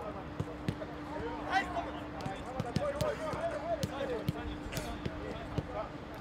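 Footballs being kicked back and forth in a passing drill on a grass pitch: sharp thuds, about two a second, with players' voices calling out over them and a steady low hum underneath.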